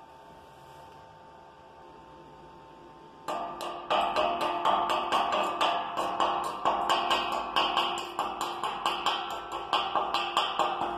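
A chipping hammer striking slag off a fresh stick-weld bead on a thin-gauge steel rectangular tube: rapid, irregular metal strikes, about three or four a second, each ringing through the steel. They start about three seconds in, after faint room tone.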